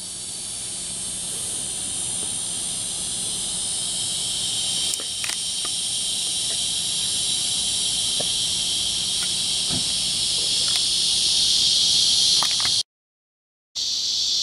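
A dense, high-pitched daytime insect chorus, a steady hiss-like buzz that slowly grows louder, over a faint low hum. It cuts off suddenly near the end.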